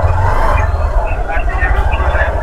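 Motorcycle riding along a wet street: its engine is a steady low rumble under road and wind noise.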